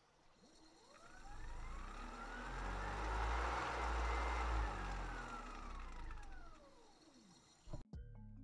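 A motor vehicle driving past: its engine and tyre noise swells to a peak midway and fades away again.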